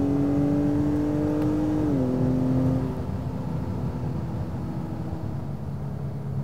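2021 Acura TLX A-Spec's 2.0-litre turbocharged four-cylinder pulling under acceleration, its note climbing slowly, then dropping sharply about two seconds in as it shifts up. The engine then eases off, leaving a quieter steady rumble of engine and road noise.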